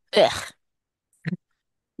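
A person's short "ugh" of disgust, a sighing groan that falls in pitch, followed by silence and a brief short sound a little over a second later.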